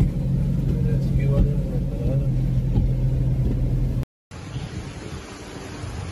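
Steady low rumble of a car heard from inside the cabin while driving, with faint voices. It cuts off about four seconds in, giving way to quieter outdoor noise.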